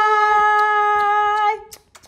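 A woman's voice holding one long sung note that stops about one and a half seconds in, followed by a few faint clicks.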